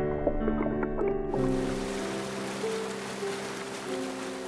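Background music with slow, sustained notes. About a second in, the steady rushing of a rocky stream's whitewater starts abruptly and runs under the music.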